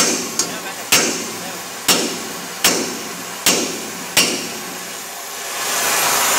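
Hammer blows on steel, six sharp ringing strikes about a second apart that stop after about four seconds, during work to free a stuck wheel bearing from a truck axle spindle. An oxy-acetylene torch heats the spindle, and its hiss swells near the end.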